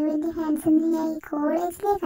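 A high-pitched voice singing in short held phrases, with brief breaks between them and no clear instruments behind it.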